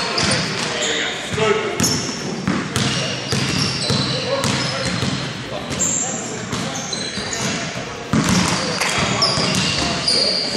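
A basketball bouncing on a wooden gym floor with short high squeaks of sneakers on the court, under indistinct players' voices, all echoing in a large hall.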